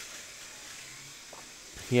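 A steady faint hiss with no distinct events, before a man's voice starts near the end.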